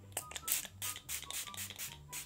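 Pump bottle of Hard Candy long-wear makeup setting spray misting onto the face in a quick run of short spritzes, several a second.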